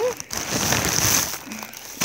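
Tissue-paper wrapping of a mailed package crinkling as it is handled, for about a second.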